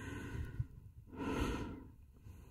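A man breathing close to the microphone: a soft breath at the start, then a longer, louder sigh about a second in.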